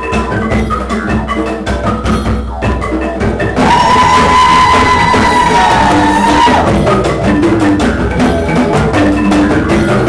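Amis bamboo percussion ensemble playing a busy, even rhythm on bamboo tube drums and a bamboo xylophone. About three and a half seconds in, a long high note is held for about three seconds over the percussion and is the loudest part.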